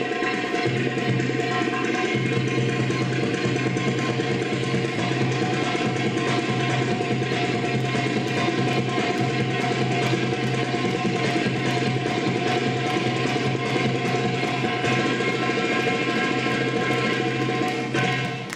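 Recorded Arabic drum-solo music for bellydance, with tabla (darbuka) hand-drum strokes over a steady low note.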